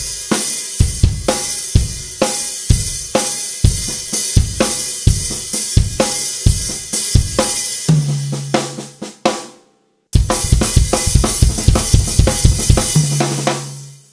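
Acoustic drum kit played slowly: accented snare strokes with quieter ghost notes, bass drum and cymbals, with a ringing tom stroke about eight seconds in. After a brief break the playing resumes with a denser run of strokes that ends on another tom stroke near the end.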